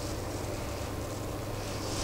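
Steady low background hum with a faint hiss, no distinct sound standing out.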